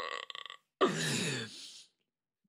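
A man's wordless vocal noise: a short rasping sound, then a drawn-out voiced sound falling in pitch for about a second.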